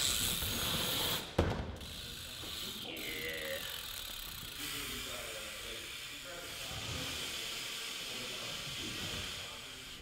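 BMX bike tyres rolling on concrete ramps with a steady hiss, and a single sharp knock about a second and a half in. Faint voices of other people chatter in the background.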